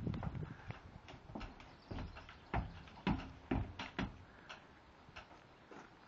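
Horses' hooves stepping on a horse trailer floor: a run of irregular hollow knocks and thumps, loudest about three seconds in and thinning out near the end.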